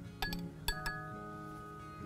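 A spoon clinking against a stemmed wine glass as fruit is spooned in: four light clinks in the first second, each leaving a brief ring. Background music plays underneath.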